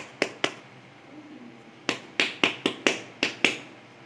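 Hands patting and pressing a ball of wheat dough shut around a sattu filling, sharp slapping pats: three near the start, then a quicker run of about seven in the second half.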